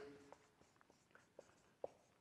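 Felt-tip marker writing on a whiteboard: a faint string of short squeaky strokes as a word is written, the strongest one near the end.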